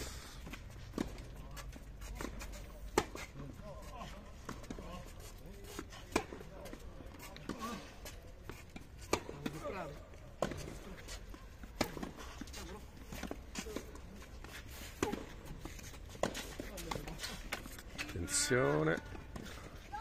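Tennis rally on a clay court: sharp racket hits on the ball every few seconds, with softer bounces and footsteps on the clay between them. Faint voices in the background and a short voice near the end.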